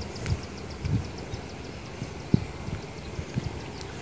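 Handling noise from a phone being carried and moved over a rice field: soft, irregular low thumps and rustling, with a faint, fast high ticking at about six a second through the first half.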